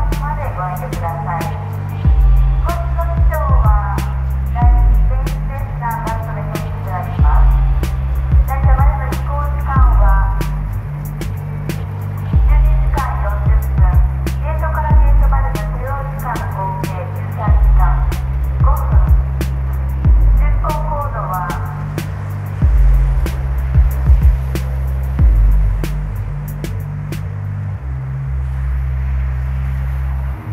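Instrumental hip hop beat with a steady drum pattern and deep bass notes that change every couple of seconds. A melodic line plays over it and thins out after about 22 seconds.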